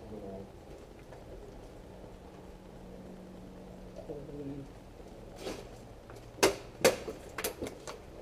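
A quick run of sharp cracks and knocks starting about five and a half seconds in, the two loudest close together near the end: airsoft BBs striking the doorway and walls close by under incoming fire.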